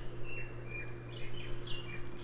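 A bird chirping in the background: several short chirps, some falling in pitch, over a steady low hum.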